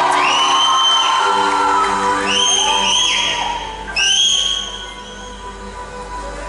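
Live band music, held chords opening a song, with several long shrill whistles and cheering from the concert crowd over it. The overall level drops about halfway through.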